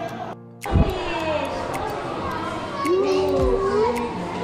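Indistinct voices, among them a child's, over background music. The sound cuts out briefly about half a second in.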